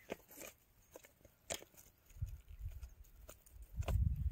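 Hands handling a freshly caught rohu and working a fishing hook out of its mouth on dry grass and straw: scattered light clicks and rustles, with low bumps about two seconds in and again near the end.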